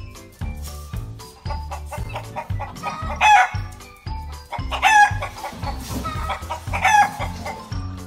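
Rubber chicken toy squawking three times as a beagle bites down on it, over background music with a steady beat.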